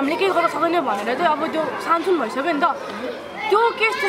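Speech only: a woman talking steadily, with a brief pause about three seconds in.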